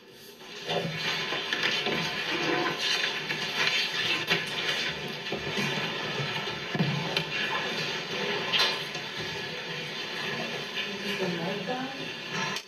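Press-room background noise coming through a television's speaker: a steady hiss-like din with murmuring voices and small knocks and shuffles, cutting in about half a second in as the broadcast audio returns.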